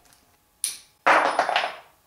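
Two sudden cracks, a short one just over half a second in and a louder one about a second in that fades away slowly: 6 mm hex bolts on an Audi 016 quattro transmission's differential-lock housing being broken loose with a hex bit.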